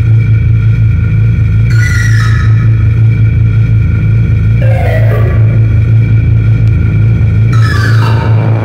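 Schranz hard techno DJ mix: a heavy, fast-pulsing bass line, with a higher synth stab that sweeps in about every three seconds.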